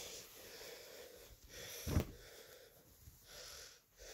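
A person breathing heavily close to the microphone, several breaths with short pauses between them, and a sharp knock about two seconds in.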